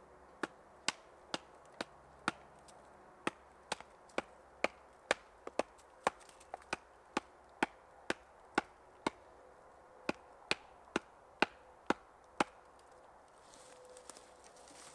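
Wood being chopped by hand: about two dozen sharp strikes, roughly two a second, with a couple of brief pauses.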